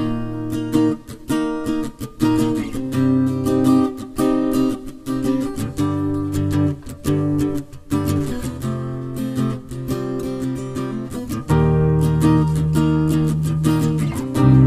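Instrumental song intro: a strummed acoustic guitar playing steady chords, with a deep sustained bass part coming in near the end.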